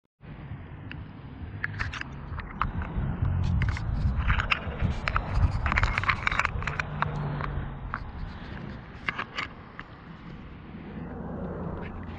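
Handling noise from a hand-held GoPro Hero 7: irregular clicks, taps and scrapes of fingers moving over the camera body, over a steady low rumble.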